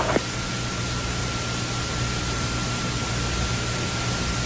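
Steady hiss and low hum of an old recording of military radio traffic between transmissions, with a faint constant high tone running through it and a brief click just after the start.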